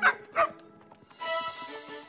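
A cartoon dog barking twice in quick succession, then soft music coming in about a second later.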